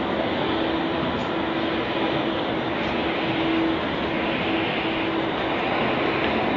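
Steady, even rushing noise with a faint low hum that comes and goes.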